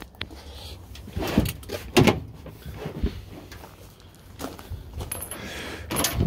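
Rubber bed mat being shifted and laid back into the steel bed of a Honda Acty mini truck, giving a few dull knocks and scuffs.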